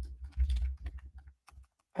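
Typing on a computer keyboard: a quick, irregular run of key clicks with low thumps under them, stopping about a second and a half in.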